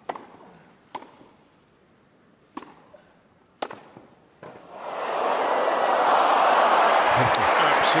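Tennis balls struck by rackets in a grass-court rally: five sharp strikes about a second apart over a quiet crowd, beginning with the serve. About five seconds in, crowd applause and cheering swell up and stay loud.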